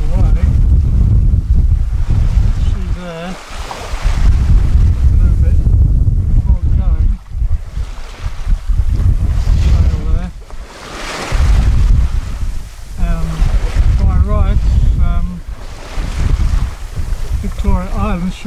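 Wind buffeting the microphone in gusts with a heavy rumble, over the wash of choppy open sea around a small sailing yacht.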